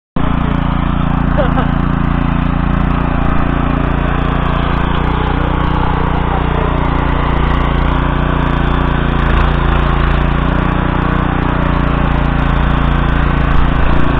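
Walk-behind tiller's single-cylinder petrol engine running steadily under load while its goose-foot cutters churn wet soil.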